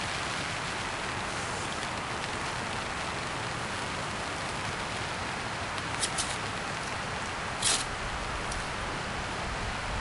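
Steady patter of rain on a tarp overhead, an even hiss throughout. A few brief clicks come about six seconds in and again just before eight seconds.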